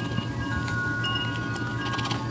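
Soft, sustained chime-like tones, several overlapping notes that fade in and out one after another, over a steady low hum.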